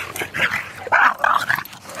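A dog close by making several short, noisy, unpitched sounds, with no barking.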